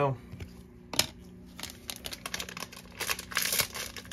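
Trading cards and packaging being handled on a tabletop: a sharp tap about a second in, then a run of crinkling and rustling clicks that thickens near the end.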